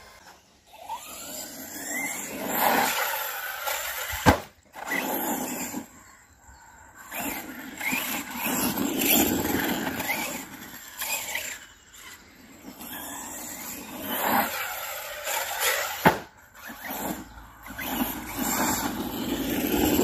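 Large electric RC cars running on a dirt track, their motors whining up and down in pitch in several waves as they accelerate and slow. A sharp knock sounds about four seconds in and another near sixteen seconds.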